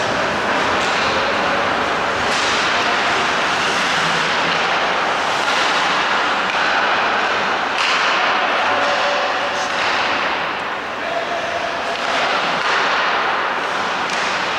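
Ice hockey play in a large, echoing rink: a steady wash of skates scraping the ice and hall noise, with a sharp clack of sticks or puck against the boards every few seconds.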